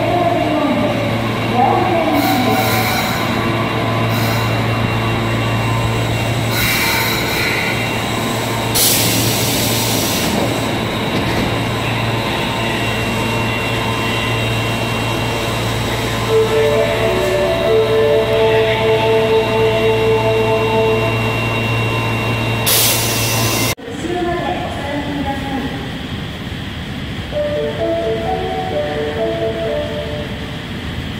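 Osaka Metro 22 series subway train at an underground platform: a steady low hum from the standing train, broken by several short bursts of hiss. A short stepped electronic chime melody plays partway through. About three-quarters of the way in the sound cuts off abruptly to a quieter platform, where another chime melody plays.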